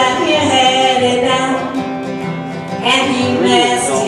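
A woman singing to her own strummed steel-string acoustic guitar in a live solo performance.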